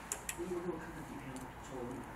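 A couple of light clicks near the start as a plastic guitar pick is set into its slot in a printer's pick-holding tray, with faint voices talking in the background.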